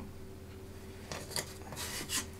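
Faint rubbing and light clicks of laser-cut acrylic case parts being handled, starting about a second in.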